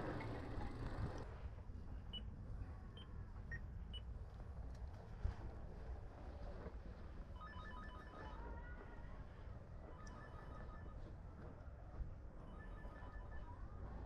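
Apartment-block door intercom: a few single short keypad beeps, then its calling tone, a roughly one-second burst of rapid electronic beeps that repeats about every two and a half seconds, faint, while it rings the flat.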